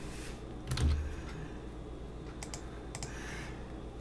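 A few separate clicks of computer keyboard keys, the loudest about a second in with a low thump.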